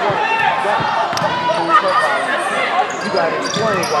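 Basketball dribbled on a hardwood gym floor, a few sharp bounces, among many short squeaks from players' shoes and voices echoing in the gym.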